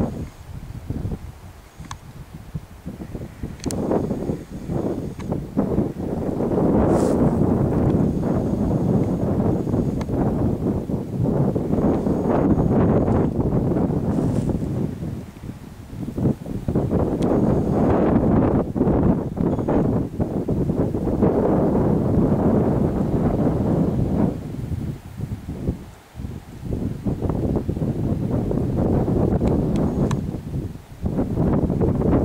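Wind buffeting the microphone in gusts: a loud, low rumbling that swells and fades, easing off briefly about halfway through and again near the end.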